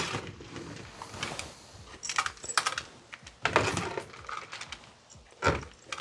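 Cooked brown rice being tipped and scooped from a plastic colander into a glass mason jar. Grains and a spatula make irregular clicks and rattles against the glass, in short clusters.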